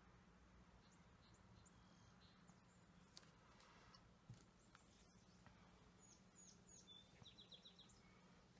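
Near silence: room tone with a low steady hum and faint bird chirps, ending in a quick run of about five chirps.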